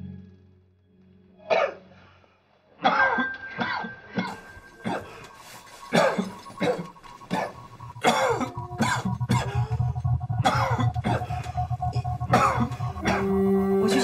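A child with a bandaged head, lying in a hospital bed after surgery, coughing and choking in distress. The bursts come irregularly at first, then grow more frequent and louder about halfway through, over soft dramatic background music.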